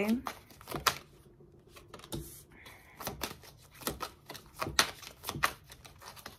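Tarot cards being shuffled by hand: an irregular run of light clicks and snaps as the cards slide and strike against each other.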